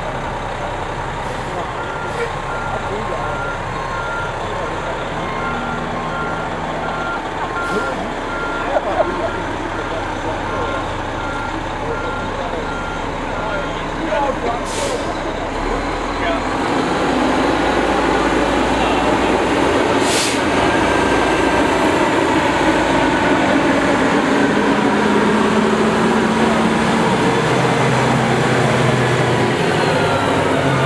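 Aerial ladder fire truck's diesel engine running as it manoeuvres, with its reversing alarm beeping in a steady repeated pattern through the first half. Two brief hisses follow, and then the engine grows louder as the truck drives up and passes close by.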